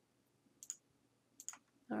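Faint computer mouse clicks: a single click a little over half a second in, then a quick double click about a second and a half in.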